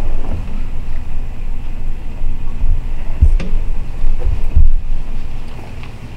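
Low rumbling noise on the microphone with a few dull thumps, dying away near the end.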